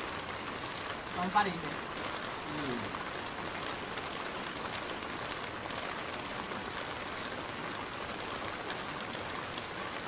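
Steady rain falling throughout, with a brief voice sound about a second in.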